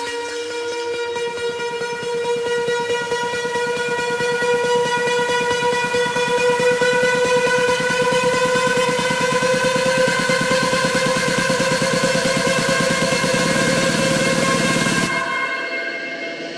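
Build-up section of an electronic dance track: a held horn-like synth tone with a pitch sweep rising under it and rapid pulsing. It grows louder and stops abruptly about a second before the end.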